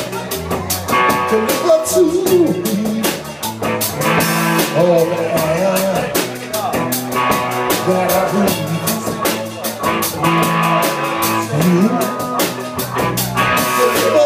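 Live blues-rock band playing, with electric guitar and a steady drum-kit beat with cymbals.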